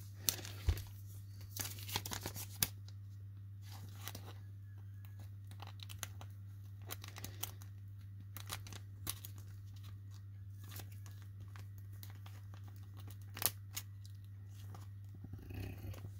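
A trading card being slid into a soft plastic sleeve and a rigid plastic card holder: faint, scattered crinkles, scrapes and small clicks of plastic, over a steady low hum.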